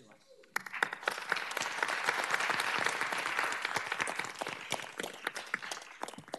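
Audience applauding, a crowd of many hands clapping. It starts about half a second in and thins out near the end.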